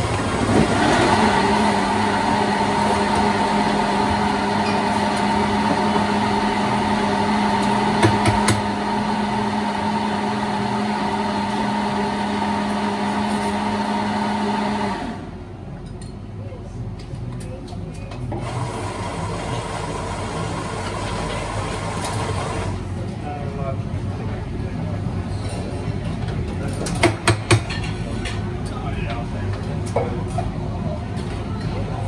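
Espresso machine steam wand steaming milk in a jug: a steady hiss with a low steady hum, which cuts off suddenly about halfway through.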